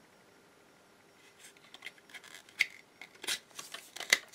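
Hands fitting a plastic cordless-drill battery-pack shell over its insert: faint rubbing and rustling with a few small plastic clicks, starting about a second in.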